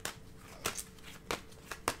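Tarot cards being handled: four faint, sharp clicks in about two seconds, over a faint steady hum.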